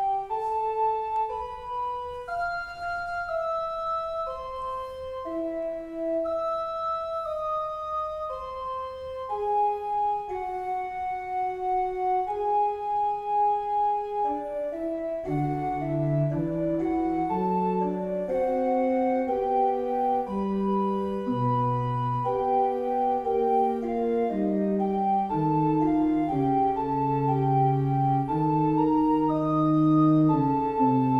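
Computer playback of a two-voice fugue on a sampled pipe organ sound, one melodic line of held organ notes alone at first. About halfway through, a second, lower voice enters beneath it and the two lines move together.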